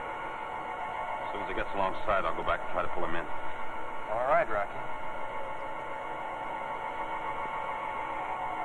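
Steady electronic drone of several held tones, the spaceship cabin hum of a 1950s science-fiction soundtrack. A man's voice speaks briefly over it, about a second and a half in and again about four seconds in.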